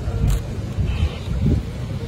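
Low, uneven rumble of wind on the microphone, with a brief click shortly after the start.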